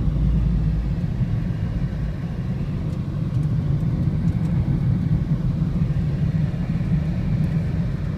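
Steady low rumble of a car's tyres and engine heard from inside the cabin while driving along the road, heaviest in the first two seconds.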